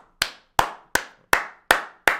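One person clapping hands, about five sharp, evenly spaced claps at a little under three a second.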